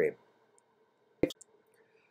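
A single short, sharp click in a quiet pause between spoken phrases.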